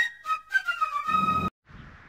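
Background music: a high woodwind melody that cuts off suddenly about a second and a half in, leaving only faint background noise.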